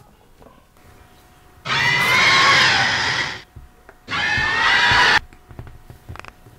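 Two loud, screeching monster roars: the first about a second and a half long starting near two seconds in, then a shorter one that cuts off suddenly.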